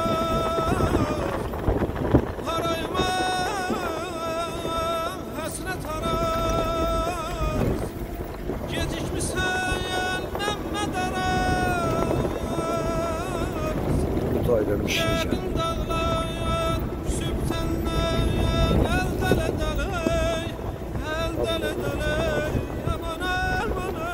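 Wind buffeting the microphone with a constant low rumble, and a melody of held, wavering notes (a voice or instrument) over it throughout.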